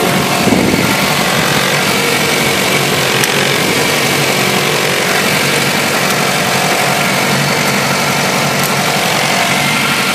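2009 Jeep Patriot's 2.4-litre four-cylinder engine idling steadily with the hood up, warming up after a cold start at 13 below zero.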